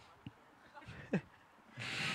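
A man's brief chuckle about a second in, then a sharp breath out close to the microphone near the end, with quiet in between.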